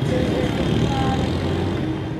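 City street traffic: a steady hum of car engines and road noise.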